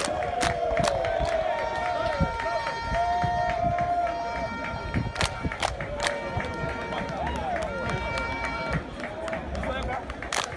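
A group of footballers chanting and singing together in unison as they jog through a warm-up, with sharp hand claps throughout. Steady held tones come and go over the voices.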